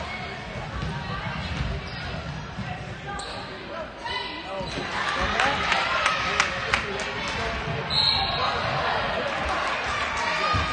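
A basketball bouncing on a hardwood gym floor as players dribble and run, with sneakers squeaking and spectators talking in the echoing gym. The bounces and squeaks grow louder about halfway through.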